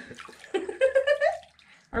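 Bath water sloshing and splashing as a person shifts in a filled bathtub, with a woman's short voiced sound rising in pitch in the middle.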